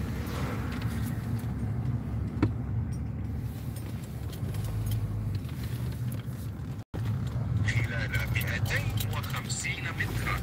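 Car cabin noise while driving slowly: a steady low engine and road rumble. A single sharp click comes about two and a half seconds in, and the sound drops out briefly just before seven seconds.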